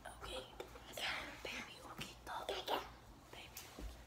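Children whispering to each other in hushed, breathy voices.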